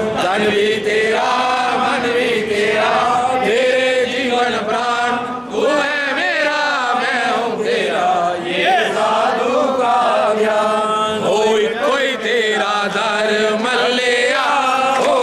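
A temple congregation of men and women chanting a Hindu devotional bhajan together. The many voices sing on without a break.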